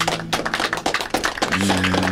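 A few people clapping in a small studio, a dense run of quick claps; a man's voice starts near the end.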